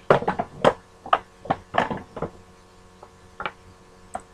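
C batteries clicking and knocking against one another as a row of them is pushed together end to end: a quick run of sharp, irregular clicks over the first two seconds or so, then one more near the end.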